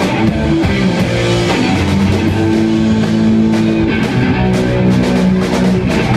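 Live rock band playing an instrumental passage: electric guitar chords held over bass and drum kit, with no vocals.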